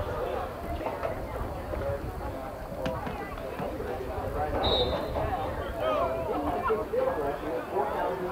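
Indistinct talk from people near the camera, with a low rumble of wind on the microphone throughout. A single short high tone sounds a little past halfway.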